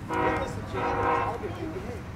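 A horn sounding two long, steady blasts, one straight after the other, with a man's voice talking over it.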